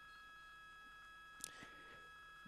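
Near silence in a broadcast's commentary feed: a faint steady hum with a few thin tones, and one brief faint click about one and a half seconds in.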